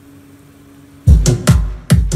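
Electronic dance music with a heavy bass kick drum, played loud through Kenwood floor-standing speakers driven by a WeWorld KM1000ii integrated power amplifier, starting suddenly about a second in. Before it there is only a faint steady hum.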